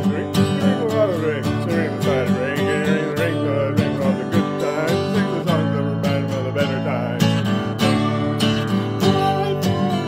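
Acoustic guitar strummed in a steady rhythm, with a man's voice singing over it.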